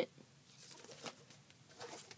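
Near silence with a few faint, short clicks from a plastic Blu-ray case being handled.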